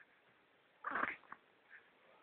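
A baby gives one short, breathy vocal sound about halfway through; otherwise it is quiet.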